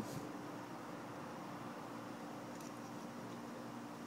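Quiet room tone: a steady background hiss with a faint low hum, and no distinct sound from the knife being worked.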